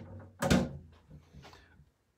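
Spent paper coffee filter being thrown into a compost bin: one sharp knock about half a second in, then a few quieter clunks.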